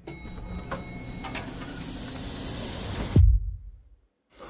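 Trailer sound design: a swell of noise that builds steadily with faint ticking, ending a little after three seconds in with a loud deep boom that drops in pitch, then cuts off suddenly.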